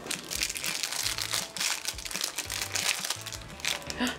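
A foil blind-bag wrapper crinkling as hands rummage inside it and pull out small plastic parts, with background music and its bass line underneath.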